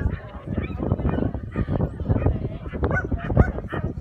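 A dog barking and yelping over and over in quick, short cries.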